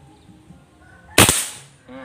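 A PCP air rifle with a stainless air tube and steel barrel firing a single shot about a second in: one sharp crack that dies away within half a second.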